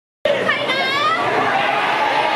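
Voices chattering in a large hall, with a high voice gliding up in pitch about half a second in.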